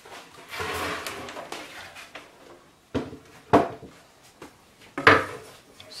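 Plywood table-saw top being slid and turned over on sawhorses: a scraping rush for about a second and a half, then three sharp knocks as it is handled and set down, the loudest about halfway through.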